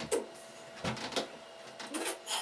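Two people scuffling in a play fight: a few sharp hits and knocks, irregularly spaced, with a faint steady hum underneath.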